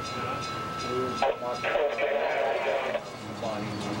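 Bascule bridge drive machinery running with a steady rumble while the leaf is lowered into its seat. A thin steady high tone cuts off about a second in.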